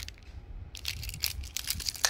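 Clear plastic wrap on a small remote control crinkling as it is handled in the fingers: a run of sharp crackles, sparse at first and thick from about a second in.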